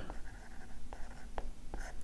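Pen strokes of handwriting, scratching softly, with a few short sharp taps as a word is written out and underlined.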